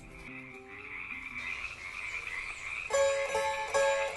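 A chorus of frogs calling together in a steady, unbroken din. About three seconds in, plucked-string music comes in over it.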